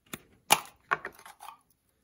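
A few sharp plastic clicks and knocks from a small hard plastic case being opened and handled on a tabletop, the loudest about half a second in.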